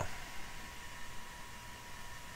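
Quiet steady hiss of room tone, with a faint steady high tone running through it.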